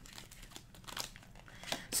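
Tarot cards being shuffled and handled in the hands: a faint papery rustle with a few light card flicks.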